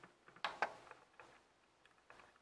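Faint clicks of small tactile push-buttons on an electronic load tester's control board being pressed by a finger: two clicks about half a second in, then a few fainter ticks.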